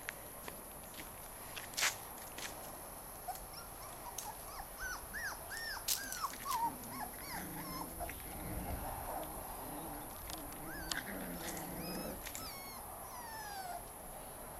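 Young puppies whining and yelping in short, high, rising-and-falling cries, in two spells, with a few sharp clicks between them.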